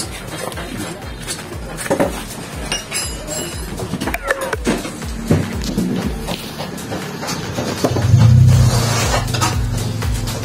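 Loose steel parts of a dismantled power steering rack (housing, bearings, bushings) clinking and knocking together and on a concrete floor as they are handled. A steady low hum comes in about halfway through and grows louder near the end.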